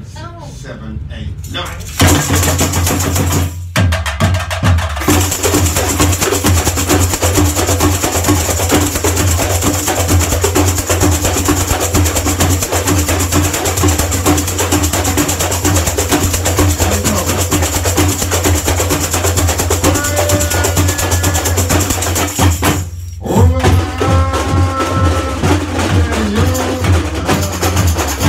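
A samba bateria playing together: a dense shimmer of chocalho shakers and tamborims over a steady low drum beat, starting about two seconds in. The playing stops briefly near the end, then comes back in with a voice singing over it.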